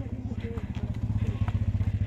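Small two-wheeler engine of a passing motor scooter running with a fast, steady low pulsing, growing louder as it comes by close; faint voices behind it.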